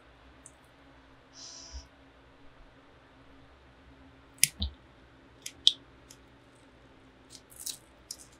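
Small scissors snipping the leathery shell of a ball python egg to open it before hatching. There are a few sharp little snips and clicks, two pairs about halfway through and a cluster near the end, in an otherwise quiet small space.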